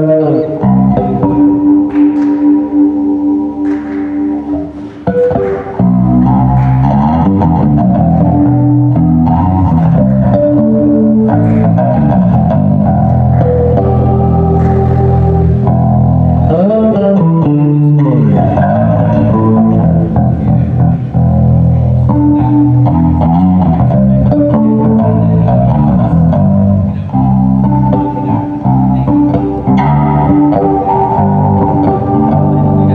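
Rock music led by bass guitar with guitar, with held notes changing continuously and a sliding note about sixteen seconds in.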